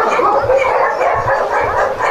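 Many dogs barking and whining at once, a loud, unbroken chorus of overlapping voices.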